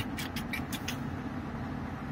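Inside a moving car's cabin: a steady low rumble of road and engine noise, with a few light clicks in the first second.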